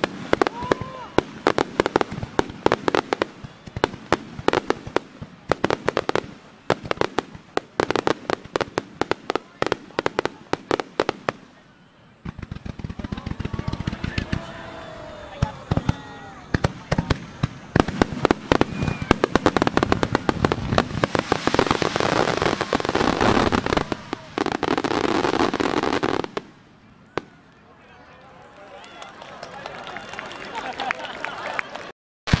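Massed fireworks barrage: a rapid salvo of shell bursts and crackles for about twelve seconds, a short lull, then a denser, unbroken volley of bursts and crackling that cuts off sharply a few seconds before the end.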